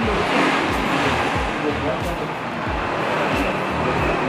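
Steady rushing noise of road traffic coming in from the street, with faint voices murmuring under it.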